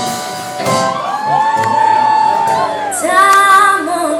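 A woman singing a long, wordless held note over a live band; her voice slides up into the note about a second in, holds it, and falls away shortly before a new sung phrase begins.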